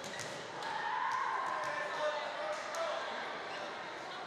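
A volleyball bouncing a few times on a hardwood gym floor, each bounce a short knock. Voices of players and spectators echo through the large gym.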